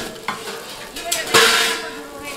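Korean pancakes (kimchi jeon and leek jeon) frying in oil on a flat griddle, sizzling steadily. A loud surge of sizzling noise comes about one and a half seconds in, with a smaller one just after the start.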